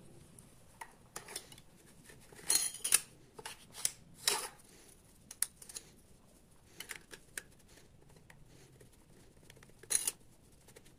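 Thin aluminum cooling fins being handled and slid onto the threaded brass cylinder of a model hot air engine: light metallic clicks and short scrapes at irregular intervals, the loudest about three seconds in and a sharp click at the very end.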